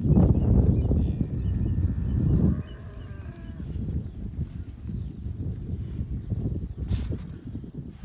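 Wind buffeting the microphone, loudest for the first two and a half seconds, with a cow giving one drawn-out call about two seconds in.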